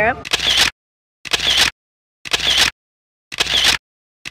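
Camera shutter sound effect, edited in, snapping four times about once a second, each snap cut off into dead silence.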